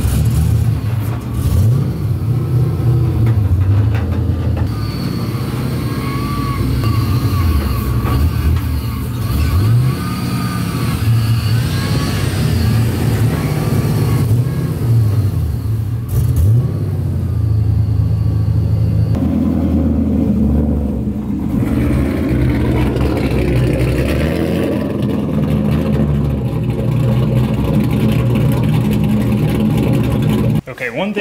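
Iron-block LS V8 swapped into a Mazda RX-7 FC, running at idle with a few brief revs in the first half, its pitch rising and falling back with each blip.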